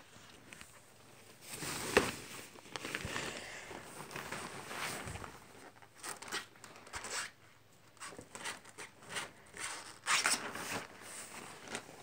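A ferret scrambling over and burrowing into a pop-up fabric hamper full of blankets: irregular rustling and scratching of cloth and the hamper's thin nylon sides, with a sharp knock about two seconds in and a burst of scraping near the end.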